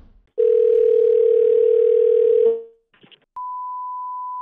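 Telephone ringback tone over a phone line, one ring of about two seconds as an outgoing call rings. After a short gap and a click, a steady higher beep tone starts and carries on.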